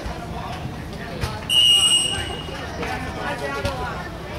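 Referee's whistle blown once, a short, steady, shrill blast about a second and a half in, over people talking in the background.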